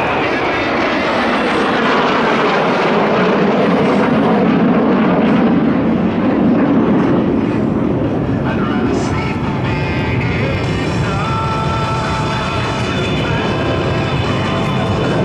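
A formation of Kawasaki T-4 jet trainers passing overhead. Their jet noise swells to its loudest about halfway through and falls in pitch as they go by, then eases into a steady rumble.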